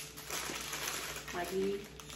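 Plastic spice and seasoning-cube packets crinkling as they are handled, for about a second.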